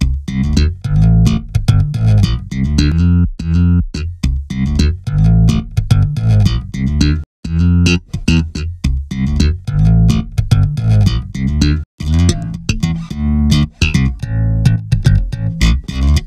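Recorded slap bass guitar takes played back solo: a busy, rhythmic line of short slapped notes with a heavy low end. The line breaks off briefly twice as several takes of the same part are auditioned one after another.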